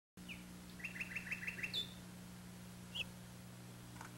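Small songbird chirping: a single chirp, then a quick run of about six chirps, a higher note, and one more chirp about three seconds in.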